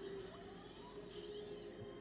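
Quiet room tone with a faint steady hum and no distinct event.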